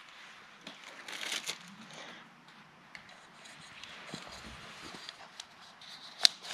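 Faint crinkling and rustling of a small plastic packet as a new O-ring seal is taken out, with light clicks of hands handling the plastic oil filter cap.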